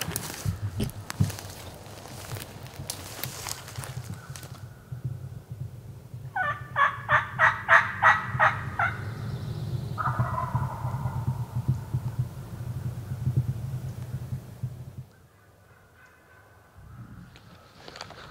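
Wild turkey gobbling: one rapid, rattling gobble of about two and a half seconds near the middle, which the hunter judges to sound like a jake (young gobbler). Rustling footsteps in the forest litter come before it.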